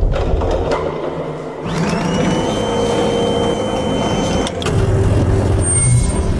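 Mechanical whine that rises in pitch, holds steady for about three seconds and then cuts off sharply, over a continuous rumble that deepens near the end.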